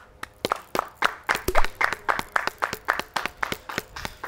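A few people clapping by hand, a quick, uneven run of claps.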